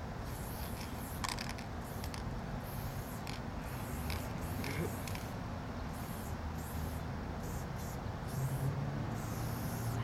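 Aerosol spray-paint can with a skinny cap, sprayed in short hissing bursts of a second or less that stop and start over and over as letters are written.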